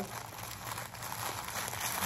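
Thin white wrapping paper crinkling and rustling as it is unwrapped by hand from a small gift.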